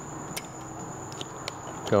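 A few faint, light clicks from hands handling small screws and plastic handlebar-cover parts, over a steady faint high whine. Speech begins right at the end.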